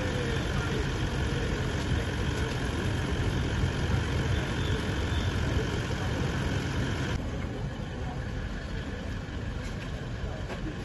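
A steady low rumble of an idling vehicle engine under outdoor background noise. A faint steady whine-like hum above it stops abruptly about seven seconds in, where the sound shifts to a somewhat quieter ambience.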